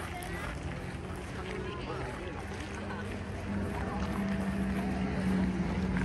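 Voices of people walking past talking, too faint to make out, over a steady low hum that grows louder about halfway through.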